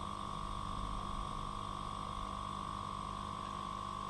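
Steady electrical hum with a constant whining tone over a low rumble, unchanging throughout.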